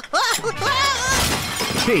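Cartoon sound effect of crockery smashing, a crash that fills the second half of the moment, with a character's wavering cries just before it.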